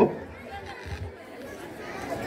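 Faint background chatter of a gathered crowd, after an amplified voice cuts off and fades out just at the start.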